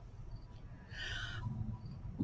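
A quiet pause in a small room: a steady low hum, a few faint high chirps, and a brief soft hum or breath from a woman's voice about a second in.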